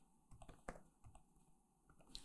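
Faint computer keyboard typing, a few scattered keystrokes.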